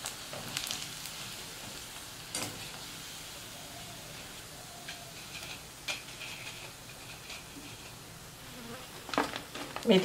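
Battered mushrooms deep-frying in hot oil in a wok, a steady sizzle, with a few light clicks of a wire strainer against the pan.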